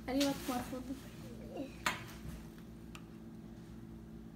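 Quiet room with faint murmured voices, then one sharp clink of cutlery about two seconds in and a fainter tick about a second later.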